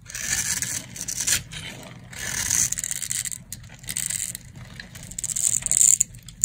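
Knife cutting through a dry, grid-scored bar of soap, shaving off crunchy little cubes. About four scraping strokes, the last and loudest near the end.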